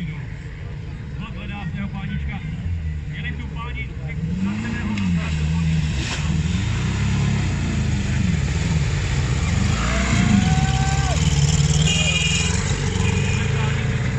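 Small tractor engine labouring and revving through a mud pit, its pitch rising and falling repeatedly as the rider works the throttle; spectators' voices can be heard underneath.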